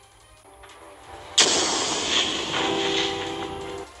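A musical transition sound effect: a sudden crash-like hit about a second and a half in, with a held chord under its tail, cut off sharply just before the end.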